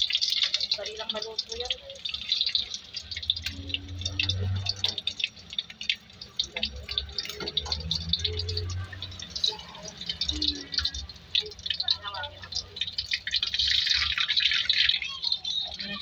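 Battered shrimp (tempura) frying in hot oil in a wok, sizzling with a dense crackle of small spatters. The sizzle swells just after the start, again briefly a few seconds in, and for a couple of seconds near the end.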